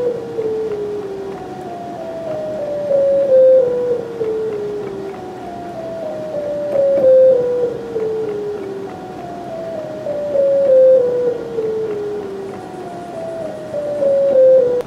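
Descending Shepard scale from an analog modular synthesizer: two sine-wave oscillators an octave apart, crossfaded by VCAs, stepping quickly down a chromatic scale played on the keyboard. Each falling run fades in from above and out below as the next begins, about every three and a half seconds, so the pitch seems to keep falling without end.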